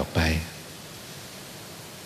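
A man's voice says a few words at the start, then a steady, even hiss of background noise fills the rest.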